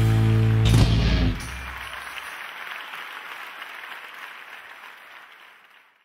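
A rock band's held final chord closes with a sharp last hit under a second in and rings out. Audience applause follows and fades steadily away.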